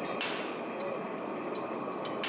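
Individual steel wires of a parallel-wire cable snapping under tension in a universal testing machine, a few sharp metallic pings and clinks over a steady noise. This is a cascading failure: the wires break one after another rather than all at once.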